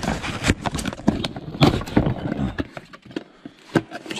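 A cardboard box of new brake parts being handled and opened by hand: a quick, irregular run of knocks, clicks and rustles of cardboard and parts, going quieter about three seconds in, with one last click near the end.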